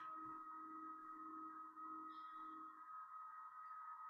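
Near silence between speech: faint room tone with a thin, steady high-pitched tone and a faint low hum that fades out about three seconds in.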